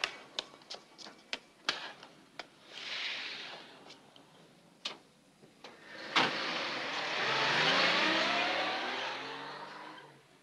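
Footsteps on pavement, then a sharp slam about six seconds in, like a car door shutting. After it a car engine sets off and accelerates, its pitch rising steadily.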